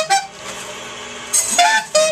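Alto saxophone improvising free jazz. A short note breaks off just after the start, about a second of quieter playing follows, then a bright, high phrase begins near the end.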